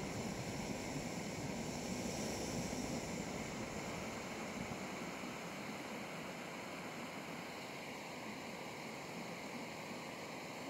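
Primus gas-canister camp stove burner running under a pot, a steady hiss that eases slightly after the first few seconds.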